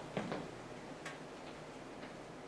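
Quiet room tone with a few faint clicks, the sharpest one about a second in.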